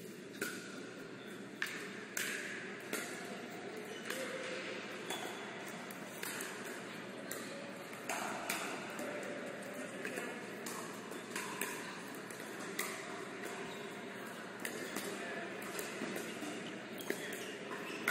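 Pickleball rally: a hard paddle popping the plastic ball back and forth, a sharp knock about every second, irregularly spaced, over the noise of a large hall.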